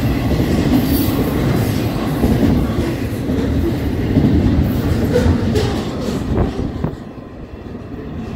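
Double-stack intermodal freight train's container-laden well cars rolling past at close range: a loud, steady rumble of wheels on rail with occasional clacks. The noise drops off sharply about seven seconds in as the last car goes by.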